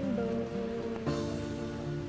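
Background music of held notes that shift to new notes twice, over the steady hiss of falling rain.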